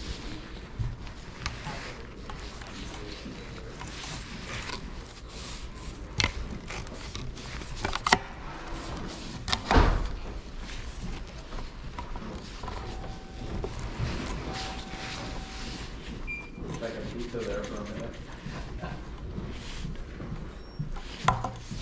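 A tripod being handled and adjusted: scattered clicks and knocks, the loudest a low thump about ten seconds in, over a murmur of background voices.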